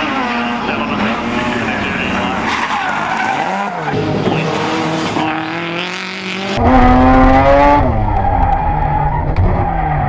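Rally car engines revving hard, pitch rising and falling with throttle, as the cars slide sideways through a corner with tyres squealing and skidding on the tarmac. About two-thirds of the way through the sound becomes louder and closer, with a heavy low rumble under the engine.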